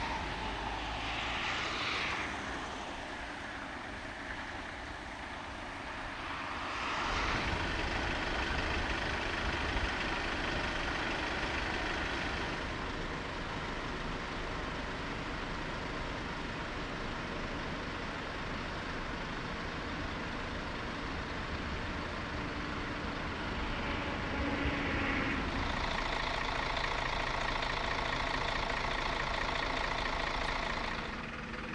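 Diesel engines of parked fire engines and ambulances running at idle, a steady mechanical running noise. It grows louder about 7 s in and again near the end.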